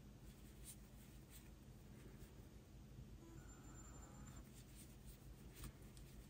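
Near silence: faint scratching of a metal crochet hook pulling yarn through stitches, with a few light ticks.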